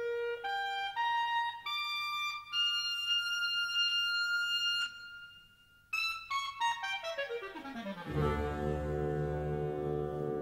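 A solo orchestral woodwind playing a slow rising phrase and holding a long note, then, after a short pause, a quick descending run that lands on a low sustained note about eight seconds in.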